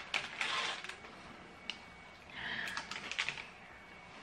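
Snack packets and wrappers being handled and rummaged through: crinkling and light clicks in two short spells, each under a second.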